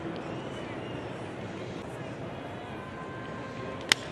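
Steady ballpark crowd ambience, then a single sharp crack of a wooden baseball bat hitting a pitched ball near the end.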